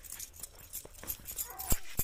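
Fish scales being scraped off against the upright blade of a boti (fixed floor knife): quick crisp scratching clicks. A brief whining cry comes about one and a half seconds in, followed at once by a sharp knock, the loudest sound.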